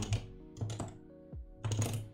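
Keystrokes on a computer keyboard in a few short bursts, with steady background music underneath.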